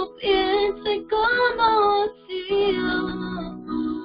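A worship song: a singing voice holding and bending long notes over instrumental accompaniment, with a brief pause about two seconds in.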